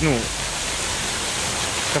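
Fountain water jets splashing into the basin: a steady, even rush of water.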